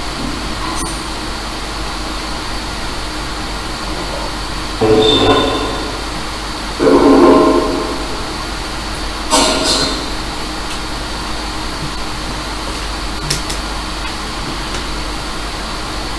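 Afterlight Box ghost-box software playing a steady hiss of static with a thin high whistle, broken by three short, echoing voice-like fragments about five, seven and nine and a half seconds in.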